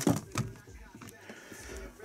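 Brief rustle and knock of a cardboard shoebox being handled, then a quiet stretch with faint background music.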